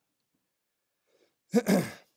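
A man clearing his throat once, a short, loud burst about a second and a half in, after a pause of near silence.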